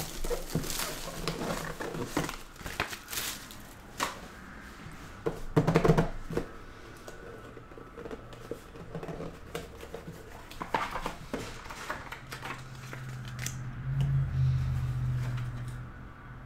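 Plastic shrink-wrap being torn and crinkled off a trading-card box, with crackles and clicks that are loudest about six seconds in. After that comes quieter handling of the cardboard box, and near the end a low steady hum lasts about three seconds while the box is opened.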